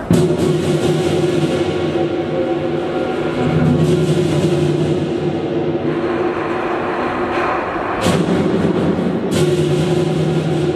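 Lion dance percussion: a big lion dance drum beating a driving, continuous pattern with gong and hand cymbals. The cymbals swell into loud crashes several times, near the start, about halfway and twice near the end.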